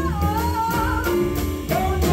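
Live jazz: a woman sings a sliding, bending vocal line into a microphone over a piano, upright double bass and drum-kit trio.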